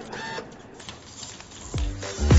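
Small serial-bus servo motors of an XGO quadruped robot dog whirring as it crouches and moves its legs, with a short whine about the start.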